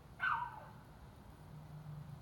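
A single short, high animal cry that drops in pitch, lasting a fraction of a second, shortly after the start. A faint low hum follows.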